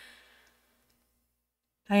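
A faint breath from the narrator in the first half second, then near silence before she starts speaking again just before the end.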